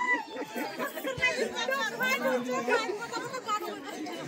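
Several women talking at once in a lively chatter, their voices overlapping.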